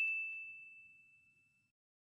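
A single high, bell-like ding: a title-card sound effect, one ringing tone that fades out over about a second.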